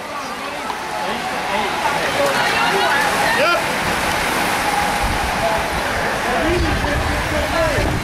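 A peloton of racing bikes rushing past a roadside crowd: a steady whooshing hiss with scattered spectator voices and shouts, and a low rumble in the second half.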